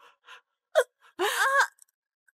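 A distraught woman gasping and sobbing: a few faint breaths, a sharp gasp a little under a second in, then a short, high-pitched crying wail.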